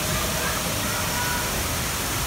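Steady rushing background noise with faint, distant voices in the first half.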